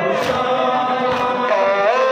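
A crowd of men chanting a Muharram nowha (lament) in unison, with sharp slaps about once a second: the beat of matam, mourners striking their chests in time.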